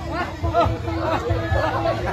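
Several people chattering together in quick, overlapping talk.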